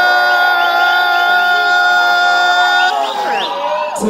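Live vocal through a club PA: one voice holds a single long note for about three seconds, then its pitch slides down, with crowd noise underneath.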